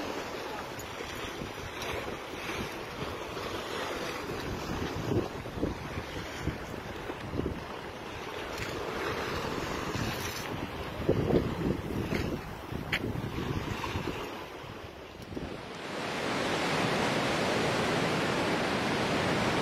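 Sea surf breaking against a concrete shore, with gusting wind buffeting the microphone. Near the end this gives way to a steady, even hiss.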